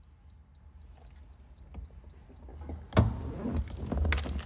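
Five short high-pitched electronic beeps, evenly spaced about half a second apart, followed about three seconds in by a loud thump and rustling.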